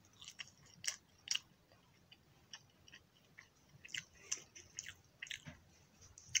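Close-miked wet mouth sounds of someone chewing a mouthful of rice and fried egg: sharp, sticky clicks that come in short clusters, with the loudest about a second in and again around four seconds, and quieter stretches between.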